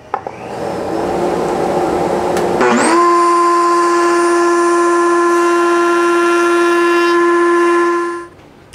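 Table-mounted router with a dovetail bit starting up. A rush of noise builds over the first second, then nearly three seconds in the motor's whine sweeps up and holds a steady high pitch.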